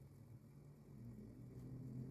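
Near silence, with only a faint low steady hum.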